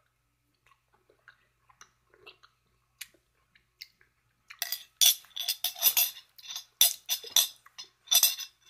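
Faint mouth and chewing sounds as a spoonful of hot pepper juice is eaten, then, from about halfway through, a run of loud, rapid, noisy bursts.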